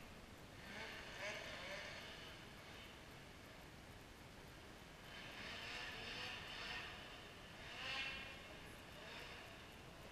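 Faint, distant snowmobile engine rising and falling in pitch and loudness as the sled is ridden along the trail, with the loudest swell about eight seconds in.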